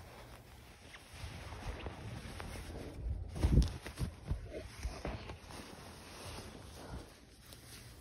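Faint rustling of nylon fabric and clothing with handling noise as a pair of knitted socks is pulled on, with a soft thump about three and a half seconds in.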